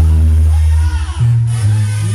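Live banda brass music amplified through a stage PA: a sousaphone plays long, low bass notes that shift pitch every second or so, with trumpets and drums over it.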